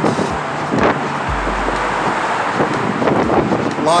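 Traffic noise from an interstate overhead, heard from beneath the bridge deck as a steady wash of sound. A deep low hum sets in about a second in, and wind buffets the microphone.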